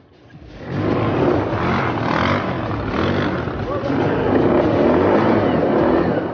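ATV (quad bike) engine revving under throttle, its low pitch wavering, as the bike sits stuck in the dirt.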